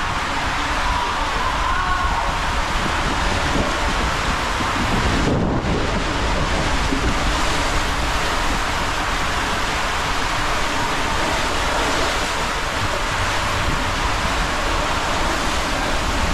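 A rider sliding feet-first down an enclosed water slide tube, with a loud, steady rush of running water and air. Its high hiss briefly dulls about five seconds in.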